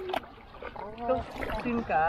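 Adults' voices in short phrases to a baby, one sliding in pitch near the end, over a low steady rumble. A brief click comes just after the start.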